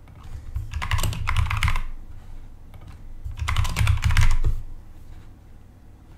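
Typing on a computer keyboard in two quick bursts of rapid keystrokes, each lasting about a second and a half, with a short pause between them.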